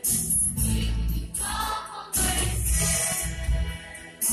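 A mixed choir of women and men singing a Mizo gospel song with musical accompaniment.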